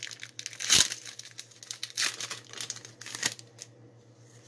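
Foil Pokémon booster pack wrapper being torn open and crinkled by hand: an irregular run of sharp crackles, the loudest a little under a second in, thinning out near the end.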